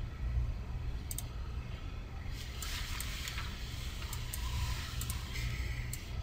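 Steady low rumble of background noise, with a few faint clicks and a soft hiss in the middle.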